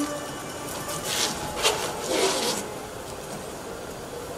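The plucked-string music breaks off, and about a second in come a few brushing, scraping swishes, then quiet until the music returns.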